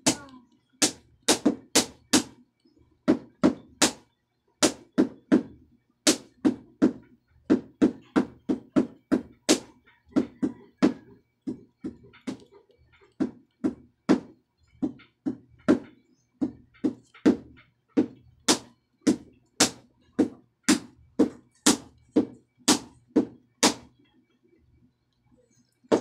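Repeated sharp knocks, about two to three a second in uneven runs with short gaps, stopping near the end.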